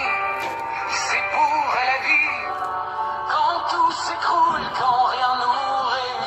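A French-language song: a sung melody over steady instrumental accompaniment.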